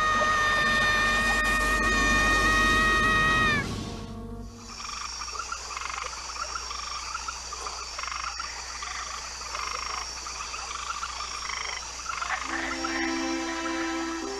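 A held musical chord ends about four seconds in, giving way to frogs croaking in a steady, evenly repeating pond chorus; soft sustained music notes come back in near the end.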